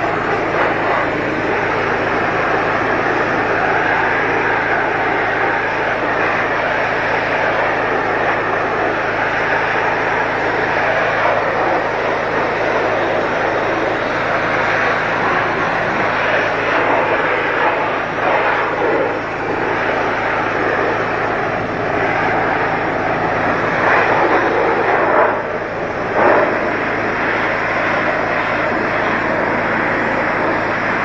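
Pressure washer running steadily, its motor hum under the hiss of the water jet hitting a tractor's engine and bodywork. The spray sound briefly changes a few times, near the middle and again toward the end, as the jet moves across surfaces.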